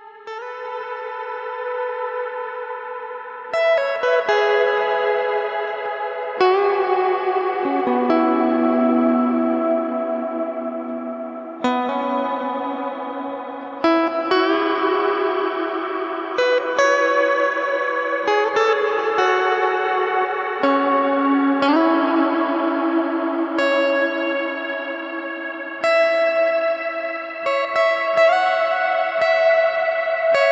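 Background music: electric guitar playing slow chords and single notes washed in echo and reverb, each chord ringing on for several seconds before the next is struck.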